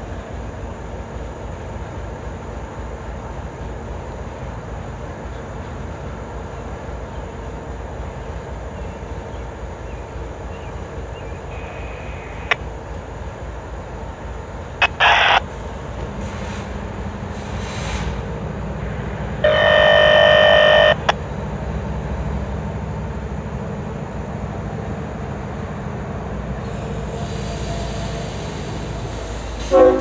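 CSX ET44AH diesel-electric locomotive idling at a stand, its GEVO V12 engine giving a steady low rumble. It sounds a short horn blast about halfway through, then a longer blast of a second and a half a few seconds later, and the engine's rumble grows louder after the first blast. A hiss comes near the end.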